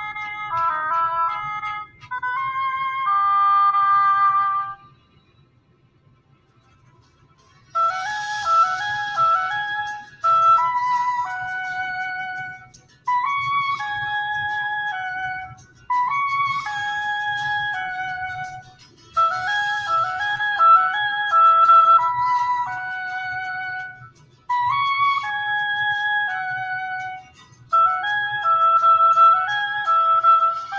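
Solo oboe playing a slow melody in short phrases, with brief breaks between phrases every two to three seconds and a silence of about three seconds some five seconds in.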